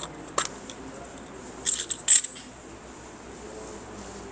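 Small metal coins clinking as they are handled: a single click just before half a second in, then a quick cluster of sharper clinks about two seconds in.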